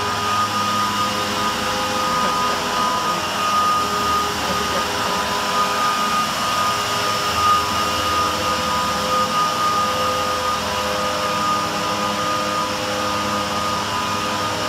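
A motor running steadily, a continuous machine drone with a high whine over a hiss, unchanging in pitch.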